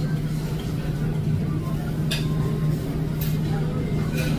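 A steady low mechanical hum over a low rumble, with a couple of brief sharp clicks about two and three seconds in.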